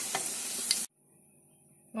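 Meat patties frying in hot oil in a frying pan: a steady sizzle with a couple of sharp clicks from the metal spatula lifting them out. The sizzle cuts off abruptly just under a second in, leaving near silence.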